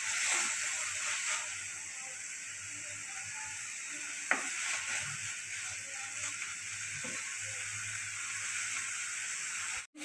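Chopped tomatoes and green chillies sizzling in hot oil in a kadai, frying down to soften for a rasam base, with a steady hiss. A wooden spatula stirs them, with one sharp tap about four seconds in.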